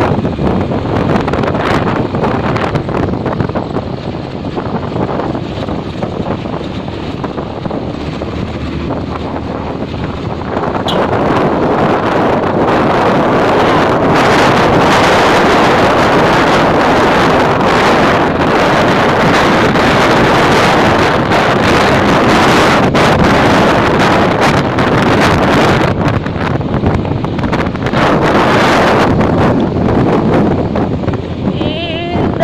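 Wind rushing over the microphone of a handheld camera on a moving motor scooter, with engine and road noise under it. The rush grows louder about a third of the way in.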